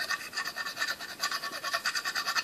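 Small metal putty knife scraping old pine tar off the barrel of a wooden baseball bat in quick, repeated short strokes.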